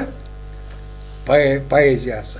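Steady electrical mains hum on the sound track, heard plainly in a pause between speech; a voice starts again a little over a second in.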